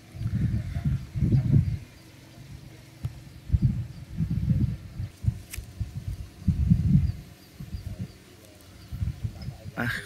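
Wind buffeting the microphone in uneven low rumbling gusts, the strongest about a second and a half in and again about four and seven seconds in, with a single sharp click at about five and a half seconds.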